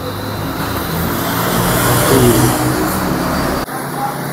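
A motor vehicle passing, its noise building to a peak midway and easing off over a steady low hum, then cut off abruptly near the end.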